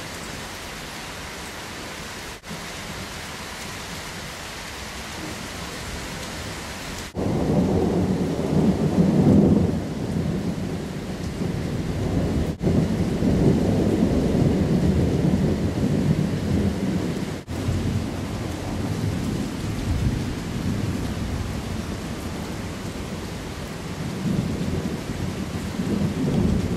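Steady rain hiss, then about seven seconds in thunder breaks out suddenly and rumbles on over the rain, loudest at first and swelling and easing for the rest of the time.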